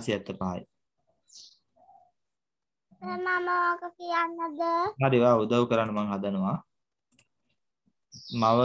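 Speech only: voices talking, with a pause of about two seconds after the first half-second. Some syllables are drawn out on held pitches.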